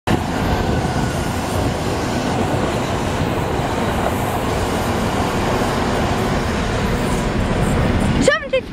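Trains running through a station close by: a Southern electric multiple unit moves past, and a GB Railfreight Class 73 locomotive draws up on the adjacent line at the head of a test train. Together they make a loud, steady rolling noise.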